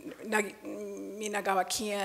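Speech only: a woman's voice through a microphone, hesitating with drawn-out "uh" sounds and half-spoken words between phrases.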